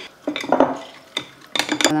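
Glass bottle and jars being handled on a kitchen counter, with a few sharp clinks and knocks, most of them bunched together near the end.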